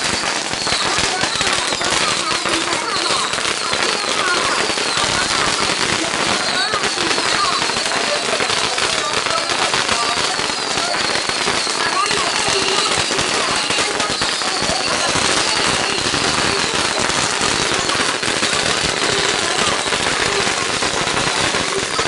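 Strings of firecrackers going off in a continuous rapid crackle of small bangs, unbroken throughout.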